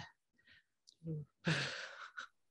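A woman's short, soft voiced sound, then a breathy, laughing sigh about a second and a half in, picked up by a video-call microphone.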